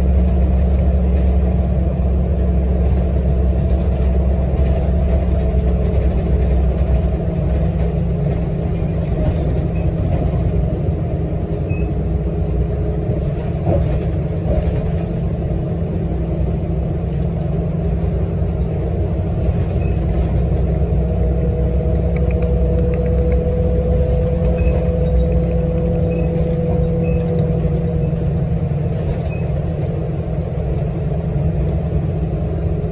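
Articulated city bus riding, heard from beside the articulation joint: a steady low rumble with a thin, drawn-out squeal that comes and goes. The squeal is the noise fault of the bendy section.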